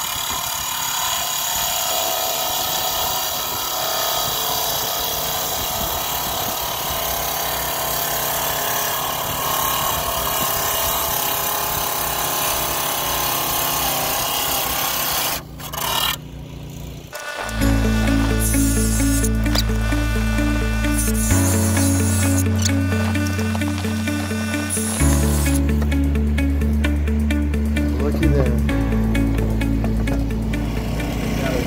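QEP 24-inch heavy-duty tile saw's diamond blade cutting through a slab of laminated lime mudstone: a steady grinding whine. It stops about fifteen seconds in, and background music with a steady, slowly changing bass line follows.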